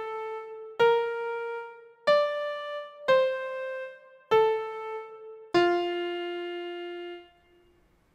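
Single electric-piano notes sounded one at a time, about a second apart, each struck and left to fade. They skip around the degrees of the F major scale, and the last and lowest note rings on for about two seconds before dying away near the end.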